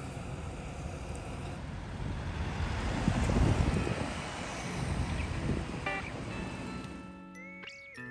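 City street traffic: cars and buses passing at a junction, a steady rush of engine and tyre noise with a deep rumble that swells as heavier vehicles go by about three seconds in and again about five seconds in. The traffic fades near the end as soft sustained music notes come in.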